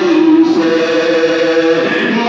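A man's voice chanting in a slow melody through a microphone and loudspeaker, holding one long note that breaks off near the end.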